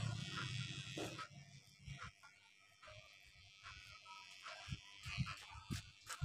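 Electric hair clippers buzzing against the head at the start, the buzz fading away within the first second or two. Then faint clicks and a few low thumps of the comb and clippers being handled.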